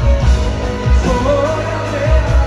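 Live pop-rock band playing with a sung melody over a steady beat, heard loud through a large arena.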